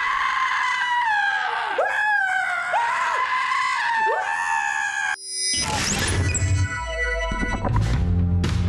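Long, high-pitched screaming from a film scene, broken off and started again about four times, cutting out suddenly about five seconds in. Music with a heavy low end then starts and runs on.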